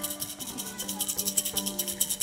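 A hand rattle shaken steadily in a fast, even rhythm, about ten shakes a second, as the lead-in to a Shawnee stomp dance song.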